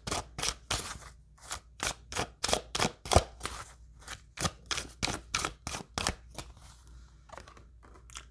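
A deck of oracle cards being shuffled by hand, a run of quick card clicks about three a second that thin out and fade in the last two seconds.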